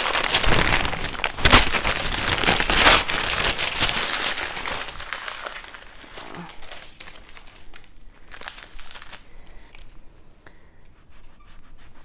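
Paper being crumpled and bunched up by hand: a loud, dense crackling for the first few seconds, then quieter rustles and clicks.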